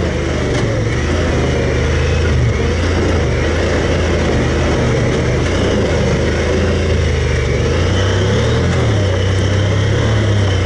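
Side-by-side UTV engine running steadily while driving over a dirt trail, with the rumble of the ride beneath it. The engine note wavers briefly near the end as the throttle changes.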